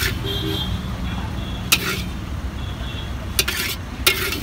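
Metal spatula scraping and clanking against a large iron wok as noodles are stir-fried: one sharp stroke just before the middle and a quick cluster near the end. Steady street traffic rumble runs underneath.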